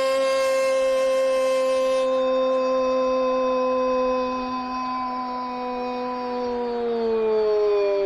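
A football commentator's long drawn-out "gol" cry in Spanish. It is one held note, steady for most of its length, that slides down in pitch over the last second or so.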